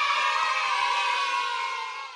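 A short inserted sound effect: a held sound of many steady tones that fades out near the end.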